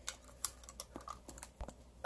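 Utility knife slitting the packing tape along a cardboard box seam: faint scratching with a few sharp clicks.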